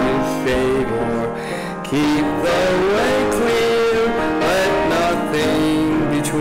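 A man singing a hymn with piano accompaniment.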